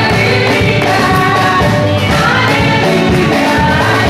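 Upbeat gospel song: several voices singing together over instruments with a steady beat.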